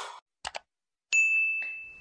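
Sound effects for an on-screen Subscribe button: two quick clicks about half a second in, then a single high ding about a second in that rings on and fades.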